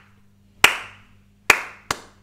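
Hands clapping a rhythm pattern at an even beat. One clap lands early on, then two quicker claps about half a beat apart, a ti-ti pair of eighth notes, with each clap dying away briefly in the room.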